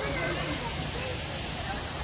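Steady rush of water falling over the rocks of an outdoor waterfall feature, with faint voices over it.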